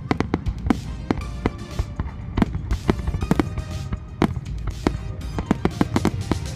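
Aerial firework shells bursting overhead in a rapid, irregular string of sharp bangs, with music playing underneath.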